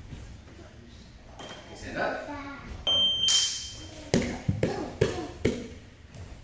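Children grappling on a padded judo mat: several sharp thumps and slaps of bodies and feet on the mat in the second half. Before them, about three seconds in, comes a short, steady high-pitched signal tone.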